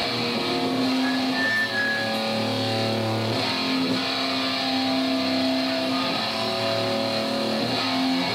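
Guitar music: held chords that change every second or two, with no drums.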